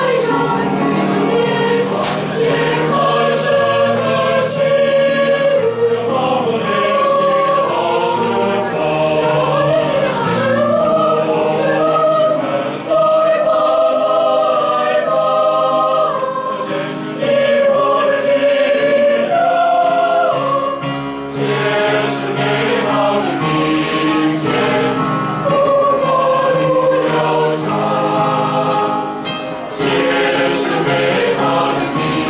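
A choir singing in harmony, several voice parts held together in long sustained notes, with short breaks between phrases.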